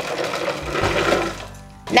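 Pecan halves poured from a plastic container into a glass bowl: a dense rattle of nuts tumbling in, which fades away about a second and a half in.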